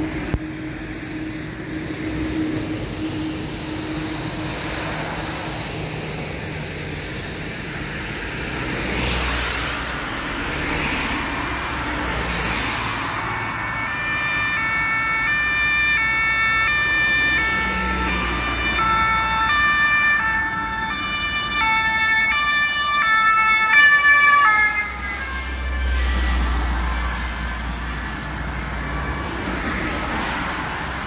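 Steady road traffic noise. From about halfway, a two-tone emergency-vehicle siren alternates between a high and a low note, grows louder, then drops in pitch as it passes and cuts off a few seconds before the end.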